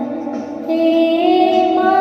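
A woman singing a Bengali devotional song to the goddess Saraswati over instrumental accompaniment; a long held note comes in a little under a second in.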